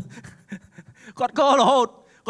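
A man speaking into a microphone: a quiet, breathy pause, then a drawn-out spoken phrase starting a little over a second in.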